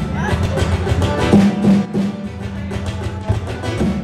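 Live band playing the opening of a song: electric guitar and bass over fast, steady washboard percussion.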